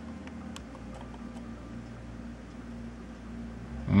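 A few faint clicks of a Canon compact camera's buttons being pressed, over a steady low hum.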